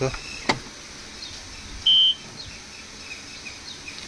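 Tractor dashboard warning beeper giving one short, steady, high-pitched beep about two seconds in, with the ignition switched on and the engine not yet started. A faint click comes about half a second in.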